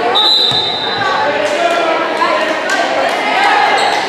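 A volleyball bouncing a couple of times on a hardwood gym floor amid the steady chatter of players and spectators in a large echoing gym. A short, high steady tone sounds near the start.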